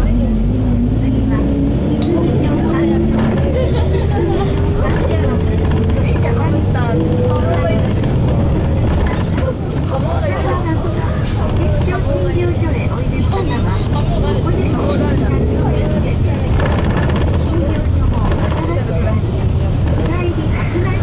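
Nissan Diesel FE6E six-cylinder diesel of a KC-RM bus, heard from inside the cabin, accelerating with its pitch rising steadily for about eight seconds. Near the ten-second mark it dips briefly, as at a gear change on the five-speed manual, then runs on at a steadier pitch. Low voices of passengers talking come through over the engine.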